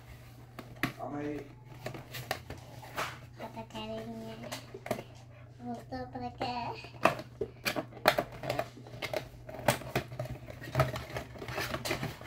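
Small white cardboard product boxes and their packaging being handled and opened: scattered taps, scrapes and rustles, with quiet voices now and then.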